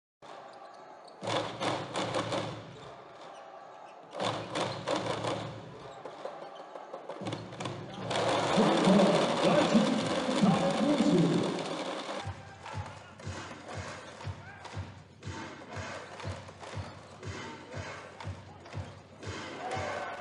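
Basketball game sound in an arena: crowd noise swelling loud for a few seconds midway. After that comes a basketball being dribbled on a hardwood court, sharp regular bounces about two a second.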